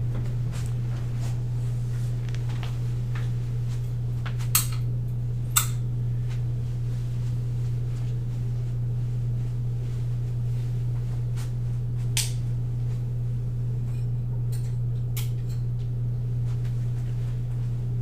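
Wall light switches clicking off: a few sharp clicks, two about a second apart, then two more later, over a steady low hum in the room.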